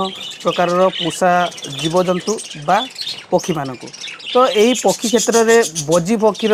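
A flock of budgerigars chirping and chattering steadily, mixed with a man talking.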